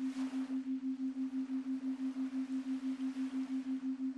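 A steady low electronic tone, pulsing evenly about five times a second over a faint hiss: the background tone of a headphone meditation recording.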